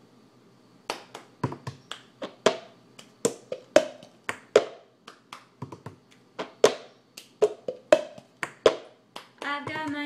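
The cup-game rhythm: hand claps mixed with an upturned plastic cup being tapped, picked up and knocked down on a tabletop, sharp hits about three a second starting about a second in. A woman starts singing near the end.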